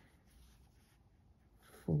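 Faint rustling and scratching of yarn drawn over a metal crochet hook while stitches of a crochet bobble are worked, the yarn wrapped round the hook and pulled through.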